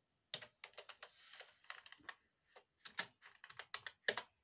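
Faint typing on a computer keyboard: a quick, uneven run of keystroke clicks.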